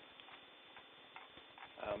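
Faint hiss with rapid, fine ticking from a Bluetooth ear-mic's audio link: the static and crackle of a poor-quality Bluetooth recording. A short spoken 'um' comes near the end.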